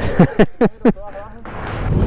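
Laughter in about four short bursts, each falling in pitch. About a second in it gives way to a low rumble of motorcycle engine and wind on the microphone that grows steadily louder.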